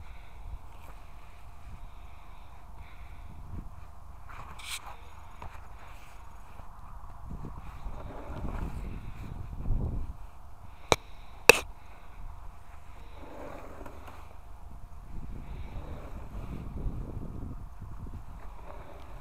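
Low rumbling movement and handling noise as a small yard dump cart loaded with brush is moved over grass, swelling twice, with two sharp clicks about eleven seconds in.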